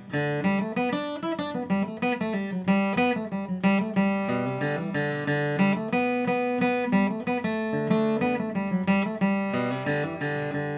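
Steel-string acoustic guitar flatpicked with the rounded edge of a Blue Chip TP1R pick, playing a bluegrass fiddle-tune-style run of single melody notes with bass notes, several notes a second. The rounded edge is used for a rounder, fatter tone.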